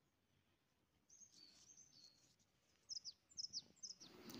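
Faint, high bird chirps over near silence. There are a few soft calls after about a second, then several short, sharper chirps sliding downward in the last second.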